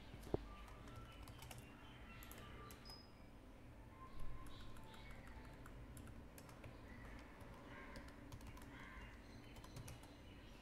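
Faint computer keyboard typing: scattered key clicks over a low steady hum, with one sharper click about a third of a second in and a brief louder patch just after four seconds.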